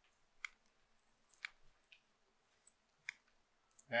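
A few faint, short clicks, spaced irregularly over an otherwise quiet room.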